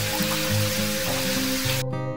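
Water splashing down into a half-full plastic tub, a steady hiss over light acoustic guitar music; the water stops suddenly near the end.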